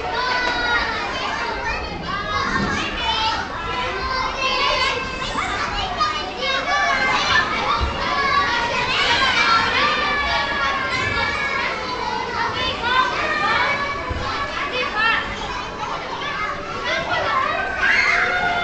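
Many children playing, their high voices shouting and chattering over one another without a break.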